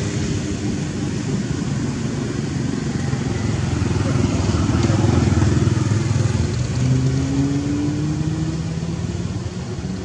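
A motor vehicle's engine running close by, getting louder toward the middle. A little after two-thirds of the way through, its pitch rises as it accelerates.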